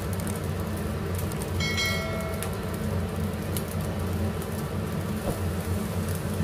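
Fried rice sizzling in a frying pan on a gas stove over a steady low hum, with occasional light scrapes and clicks from stirring. About one and a half seconds in, a short bright electronic chime rings.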